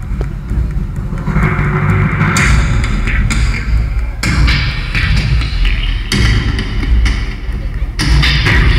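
Loud live music with a heavy bass, played over a theatre's sound system and heard from the audience, with strong hits about every two seconds.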